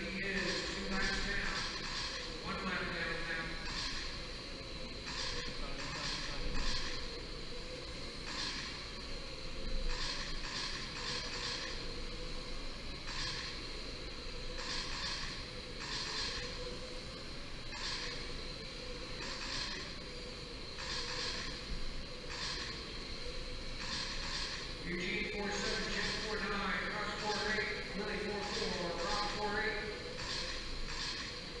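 Electric 1/10-scale RC oval cars with 21.5-turn brushless motors running laps, a high-pitched whine with tyre hiss that swells and fades as each car passes, every second or two. A thin steady high tone sits under it throughout.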